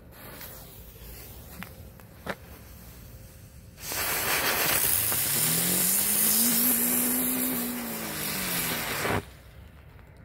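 Ground-spinner firework (Comet Geisterstunde) burning on concrete: after a quiet stretch with a couple of faint clicks, it ignites about four seconds in with a loud hiss and a whirring hum that rises in pitch as it spins up and falls as it slows. It spins strongly without sticking and cuts off about nine seconds in.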